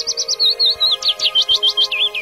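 A songbird singing a quick run of chirps that steps down in pitch as it goes, over soft, steady background music.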